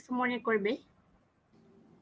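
A person speaking briefly over a call, then about a second of near silence.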